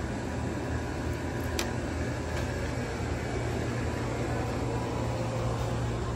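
Steady low mechanical hum of a shop's background machinery, with one light click about one and a half seconds in.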